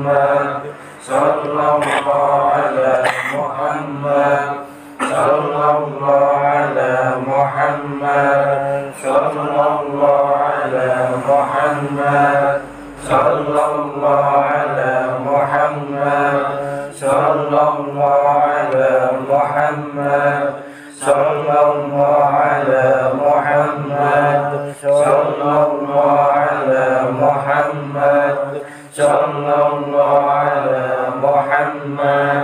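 A group of men chanting dhikr together in unison, repeating a phrase in a steady cycle of about four seconds with a short breath-pause between repetitions.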